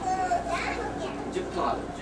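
Children's and other passengers' voices chattering inside a railway passenger coach, over a low steady rumble.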